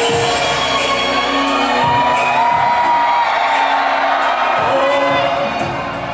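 Live concert music playing through the venue's sound system without lead vocals, with audience cheers and whoops over it.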